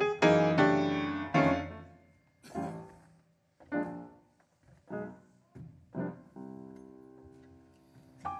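Solo piano playing a slow, free-time introduction. Loud, busy chords fill the first two seconds, then single chords are struck about once a second and left to ring out, and the last one is held from about six seconds in.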